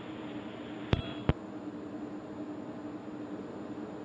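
Steady hiss and faint hum of an open launch-commentary audio line between callouts, broken about a second in by two sharp clicks about a third of a second apart, like a microphone key clicking on and off.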